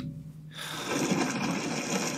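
A rushing, water-like noise swells over the last second and a half, after a low hum fades out in the first half second. It is a sound effect from an anime episode's soundtrack.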